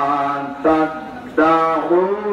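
A man's voice chanting a melodic recitation into a microphone, in long held notes that slide slowly in pitch, with two short breaks about half a second and a second and a half in.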